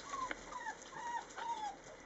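A run of about five short, high calls, each arching up and down in pitch, over a second and a half: an animal's whines or chirps.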